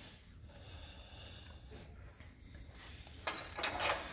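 Quiet shop background, then from about three seconds in a short run of light metallic clicks and clinks as a wrench works a brass air brake hose fitting tight.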